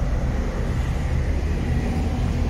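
Audi A5's 1.8 TFSI four-cylinder petrol engine idling: a steady low hum.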